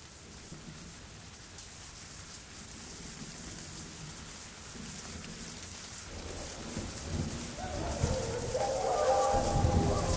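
Rain and thunder effect: a steady rain hiss with low rumbles, getting steadily louder. Sustained tones fade in over the last couple of seconds.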